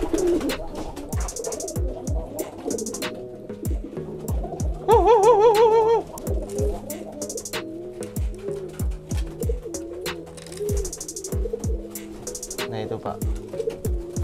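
Domestic pigeons cooing over and over, many short coos overlapping. About five seconds in, a louder warbling tone with a fast wobble in pitch lasts about a second.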